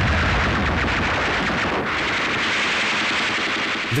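Continuous rapid machine-gun fire, a dense unbroken rattle at a steady level with no pauses between bursts.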